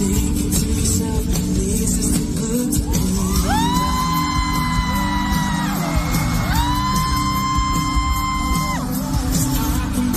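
Live pop band playing at a concert, heard loud from the crowd, with bass and drums steady underneath. Two long, high held voice notes ring over the music, each scooping up in pitch as it starts, about three and a half seconds and six and a half seconds in.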